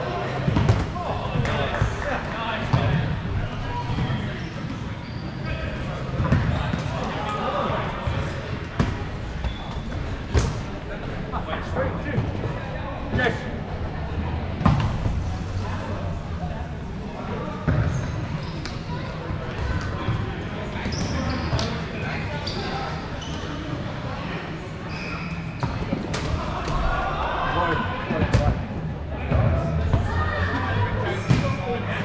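Rubber dodgeballs being thrown, bouncing on the court and smacking into players and netting, in sharp thuds at irregular intervals, echoing in a large hall, with players' voices calling out.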